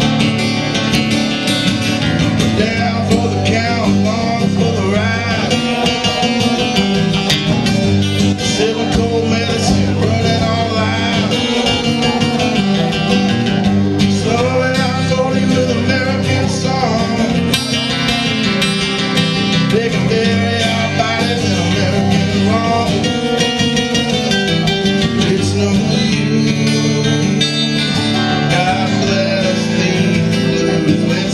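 Live Americana song led by guitars, played by a small band and recorded from within the audience, with a steady, continuous accompaniment.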